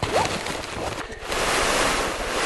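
Woven plastic landscape fabric rustling and crinkling as it is unrolled and walked on, swelling into a steady rush of noise about a second and a half in.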